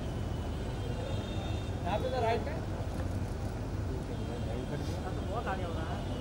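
Steady low hum of a busy indoor event space, with brief calls from photographers' voices about two seconds in and again near the end.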